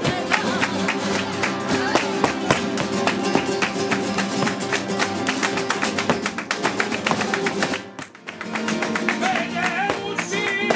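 Live flamenco: several acoustic flamenco guitars strumming together, with sharp hand-clapping (palmas) marking the rhythm. The music dips briefly about eight seconds in, then carries on.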